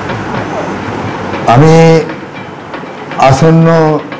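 A man speaking Bengali into a microphone, drawing out two syllables at a steady pitch, about half a second each, in the second half. Steady background noise runs under the voice.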